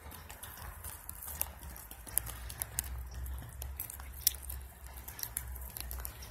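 Goats' hooves tapping on brick pavers: scattered sharp clicks, the loudest about four seconds in.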